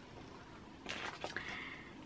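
Faint handling noise from a paper clothing tag and small scissors. A brief rustle comes about a second in, then a faint steady high tone.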